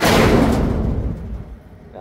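A large thrown item crashing into a steel roll-off dumpster: one loud crash at the start that rings on and dies away over about a second and a half.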